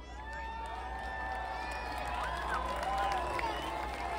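A large outdoor crowd cheering, many voices holding long drawn-out calls over one another and growing louder.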